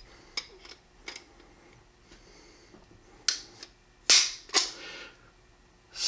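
Dry-fire clicks of a Beretta 92X Performance's double-action trigger pulled by a digital trigger-pull gauge: a few light clicks, then sharp metallic clicks about three and four seconds in, as the hammer falls.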